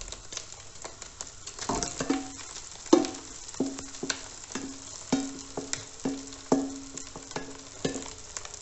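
A wooden spatula knocks and scrapes cold cooked rice out of a stainless steel bowl into a hot wok. From about two seconds in there is a run of knocks about every half second, each leaving the bowl ringing briefly. Frying sizzles faintly underneath.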